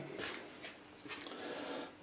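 Quiet room with faint handling noise: soft rustles and a few light clicks.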